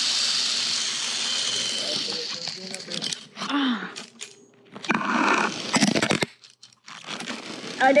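Zip-line trolley pulleys running along the steel cable, a steady hiss that fades away over the first two or three seconds as the rider slows to a stop short of the platform. Then scattered rubbing and crunching of handling on the line, with a short noisy burst about five seconds in.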